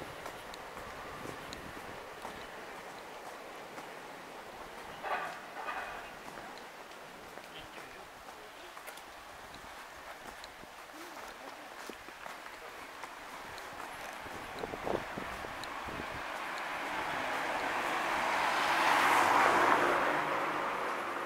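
Quiet street ambience heard while walking over paving stones, with brief voices about five seconds in. A broad rush of noise builds near the end and is the loudest sound.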